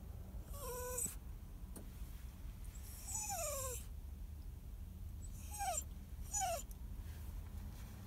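Small dog whining anxiously, four high cries that each slide down in pitch, the last two short and about a second apart: the dog is crying at being left.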